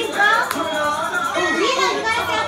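Children's voices shouting and chattering over background music, with a single sharp click about half a second in.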